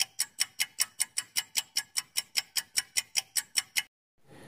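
Countdown-timer sound effect of rapid, even clock ticks, about five a second, that stop shortly before the end. It marks the answer time running out on a quiz question.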